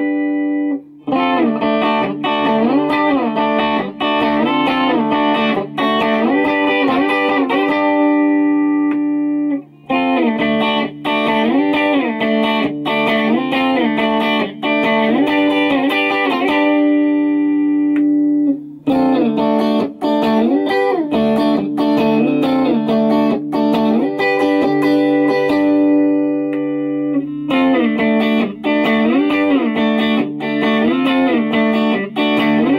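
Crate Strat HSS electric guitar played on a clean amp tone: a melodic line of sustained notes with wavering vibrato. It falls into long phrases of about nine seconds, each broken by a short pause.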